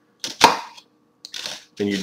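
Kitchen knife slicing into a halved raw onion: two short crisp crunches about a second apart.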